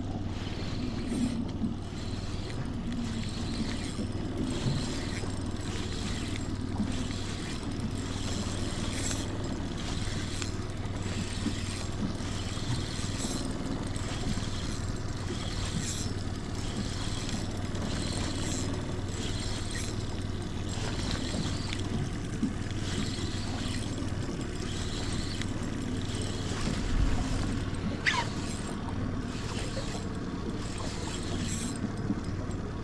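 Boat's outboard motor running steadily at trolling speed, with scattered light clicks from a spinning reel as a hooked trout is played on a light rod.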